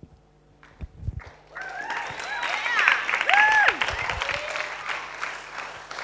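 Audience applauding and cheering, with whoops rising over the clapping, starting about a second and a half in and thinning toward the end.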